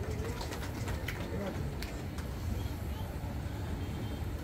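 A low, steady hum with faint murmuring voices and a few light clicks in the background, in a pause between amplified speech.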